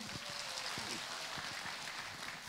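Audience applauding, steady and fairly light.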